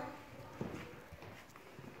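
Faint light knocks and shuffling in a quiet room, one small knock about half a second in.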